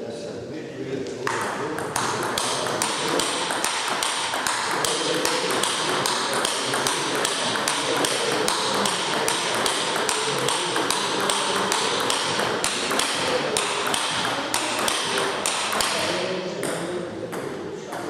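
Table tennis rally: the celluloid ball clicking back and forth off the bats and table about twice a second, starting about a second in and stopping shortly before the end.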